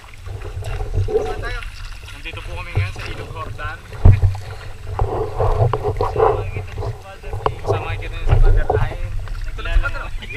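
An inflatable raft being paddled on a river: plastic paddles dipping and splashing, with scattered knocks, the sharpest about four seconds in. A steady low rumble of wind on the microphone runs under it.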